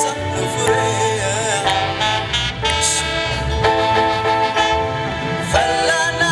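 Live band music: trumpets hold bright sustained notes over drums, bass and keyboard.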